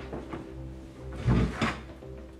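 A wooden dining chair is pulled out and sat on, knocking twice about a second and a half in. Background music with low held tones plays throughout.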